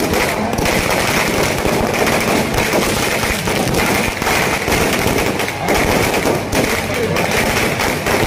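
Firecrackers and fireworks packed into burning Ravan effigies going off in a dense, continuous crackle of rapid bangs.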